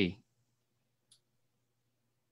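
Near silence on a video call after a voice stops, with a faint low hum and one faint short click about a second in.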